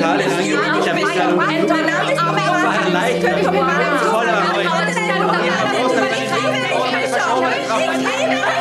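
Several voices talking at once, overlapping into a jumble of speech, over a backing of low held music notes that change pitch about three and six seconds in.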